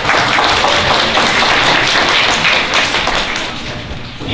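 Audience applauding, many hands clapping at once, dying away toward the end.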